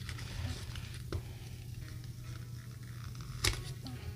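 Faint rustling and crinkling of a paper sheet of adhesive strips being handled and folded, with a small tick about a second in and a sharper tap near the end, over a low steady hum.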